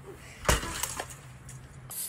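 A sudden crash about half a second in, followed by a few smaller knocks and clatters. Right at the end an aerosol spray starts hissing.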